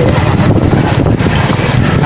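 Small motorcycle engine running steadily while riding, heard from the bike itself, with wind rumbling on the microphone.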